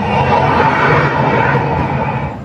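Dance music's last held sound dying away under crowd noise and cheering, slowly fading toward the end.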